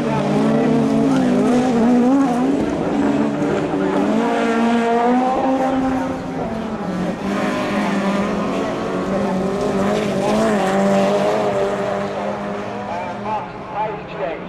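Several rallycross cars' engines revving hard and changing gear as they race, the pitches of overlapping engines rising and falling over one another, with some tyre noise.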